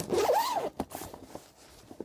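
Zipper on a tennis bag's pocket pulled open in one quick stroke lasting just under a second, followed by a short click and faint rustling.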